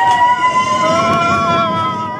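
Several roller-coaster riders screaming together in long held screams over the rumble and rush of the moving train.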